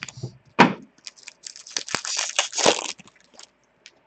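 Crackling, rustling paper-and-card handling noise: a trading-card pack wrapper being torn open and its cards handled. There is a sharp crackle about half a second in and a dense run of crinkles in the middle.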